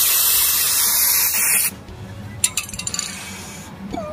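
Aerosol can of hydro-dip activator spraying in one steady hiss of nearly two seconds onto the dipping film, then cutting off. A few light clicks follow.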